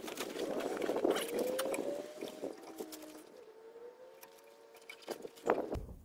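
Scuffing and rustling of clothing and gravel as a person crawls under a pickup truck to take down its spare tire, with a few sharp knocks near the end as the tire is handled.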